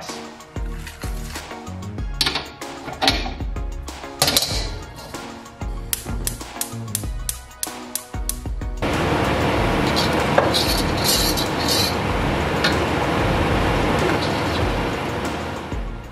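Metal cookware clinking and knocking over background music, then a steady rushing hiss for the last seven seconds from a gas stove burner flame heating a carbon-steel wok.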